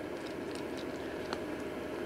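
Steady background room noise, with a few faint, sharp clicks from cats chewing treats.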